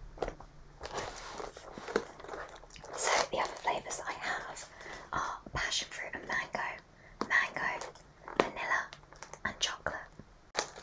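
A woman whispering close into a microphone, with small sharp clicks between phrases.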